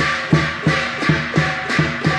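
Chinese lion dance drum beaten with two sticks in a driving rhythm of about three strokes a second, with hand cymbals clashing over it in a continuous metallic wash.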